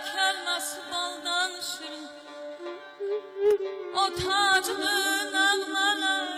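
Azerbaijani mugham music: a wavering, ornamented melody line over a steady held drone.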